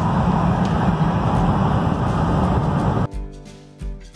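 Steady road and engine noise inside the cab of a Class C motorhome driving at highway speed, with a strong low hum. About three seconds in it cuts off abruptly and acoustic guitar music begins.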